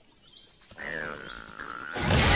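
A cartoon hedgehog creature's high, squeaky call, starting under a second in and held for about a second, dipping slightly in pitch.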